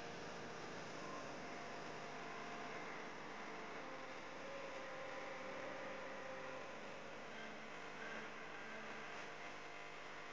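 Steady, faint wash of surf breaking on a rocky shore below. A faint drawn-out tone rises above it for a couple of seconds mid-way through.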